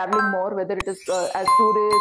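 Subscribe-button animation sound effects: sharp clicks, then a bell chime that starts about a second and a half in and rings on steadily.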